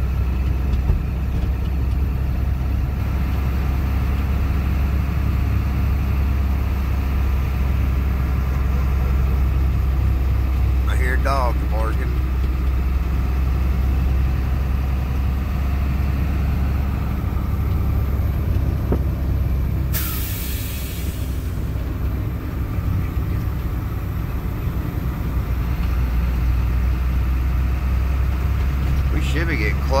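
A big truck's engine and drivetrain drone steadily while it is driven slowly along a narrow country road, heard inside the cab. A short hiss comes about two-thirds of the way through, with a brief sliding squeak-like tone before it.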